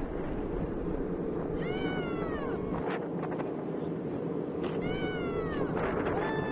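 Two high-pitched drawn-out cries, each under a second, rising then falling in pitch, about two and five seconds in, over a steady low rumble.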